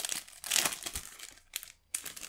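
A foil-lined trading-card booster pack being torn open and crinkled by hand. The crackling is loudest in the first second, then dies down, with a short crackle again near the end.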